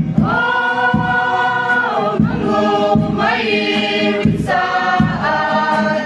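A choir, women's voices to the fore, singing together: a long held note for nearly two seconds, then shorter notes that move to a new pitch about once a second.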